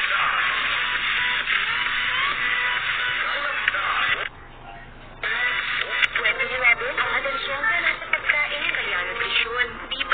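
Television commercial soundtrack: music with voices, thin and tinny, as if squeezed into a narrow band. It drops out for about a second partway through, then a new ad's music and voices start.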